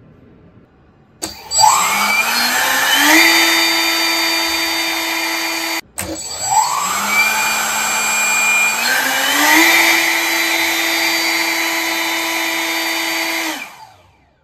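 3D-printed 70 mm electric ducted fan running on a thrust stand. It spins up with a rising whine about a second in and holds steady at high speed. After a brief break it spins up again in two steps to a higher steady whine, then cuts off just before the end.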